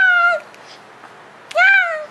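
Baby vocalizing: two high-pitched squealing calls, each rising and then falling in pitch, one at the start and a shorter one near the end.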